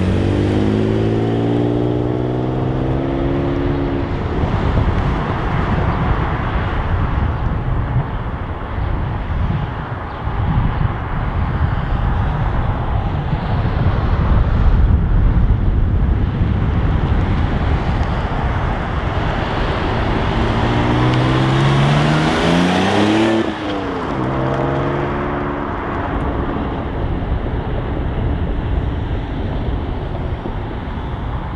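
1991 Dodge Stealth R/T Turbo's twin-turbo 3.0-litre V6 accelerating, its pitch climbing over the first few seconds. A little over 20 seconds in it climbs again and the car goes past, the pitch dropping sharply as it passes. Then it settles to a lower, steadier run.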